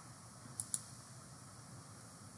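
Two quick computer mouse-button clicks about half a second in, over faint steady hiss.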